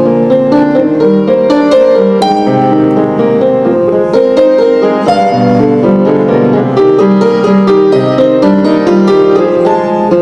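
Grand piano played solo: a busy, unbroken stream of quick notes over a lower bass line.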